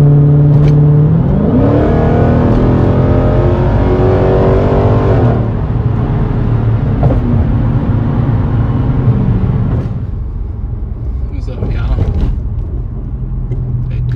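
Car engine heard from inside the cabin under hard acceleration: its pitch climbs for about four seconds, drops back, and settles into a steady low drone at highway cruise.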